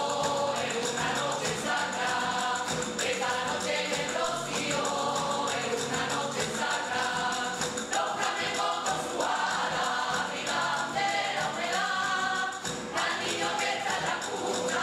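Rociero choir singing a song together, over steady rhythmic hand clapping (palmas) and the tamborilero's pipe and tabor: a three-hole flute and a tamboril drum.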